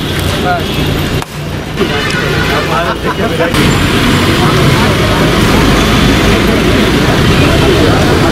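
Crowd of people talking over one another, then from about three and a half seconds in a louder, steady noise of ambulance engines running together with the crowd.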